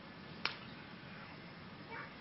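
Faint room tone during a pause in a talk, with one short click about half a second in.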